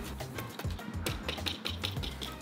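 Provolone being finely grated on a handheld rasp grater: a quick, irregular run of light ticks, over background music.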